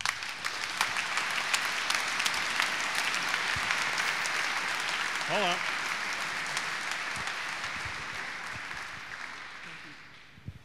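Audience applauding, a dense steady clapping that fades away over the last few seconds. A brief rising voice call cuts through it about five seconds in.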